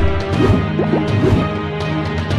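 News-segment theme music of sustained tones, with loud crash-like transition hits about half a second in and again a little past the middle.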